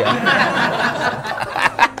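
Several people laughing together in a room, the audience and the two men on stage, a dense, continuous burst of laughter.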